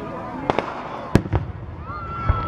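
Aerial fireworks shells bursting: four sharp bangs within about a second, the third the loudest.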